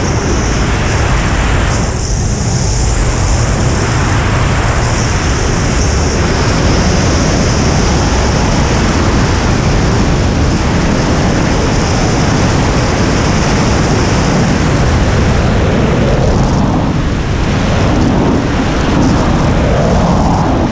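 Loud, steady wind rushing over a GoPro camera's microphone in wingsuit freefall, a dense buffeting noise heaviest in the low end.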